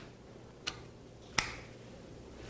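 Two sharp clicks, about 0.7 seconds apart, the second one louder.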